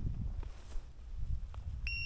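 Wind buffeting the microphone, with one short, steady, high-pitched electronic beep near the end.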